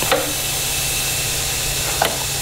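Steady hiss of compressed air, at about 3 bar, escaping from leaks in a turbocharged car's pressurised charge-air system during a boost leak test: the intercooler is leaking, and at more than one spot.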